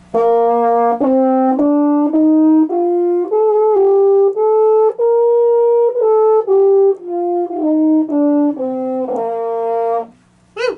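Baritone horn playing a B-flat major scale over one octave, up and back down, at about half a second a note. The top B-flat in the middle is held about a second.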